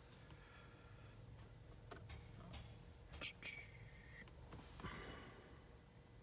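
Near silence: quiet car-cabin room tone with a few faint clicks and a brief soft breath near the end.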